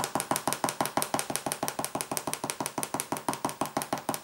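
Kneaded eraser rubbed quickly back and forth over grey card to lift pencil graphite: a rapid, even scrubbing of about eight strokes a second.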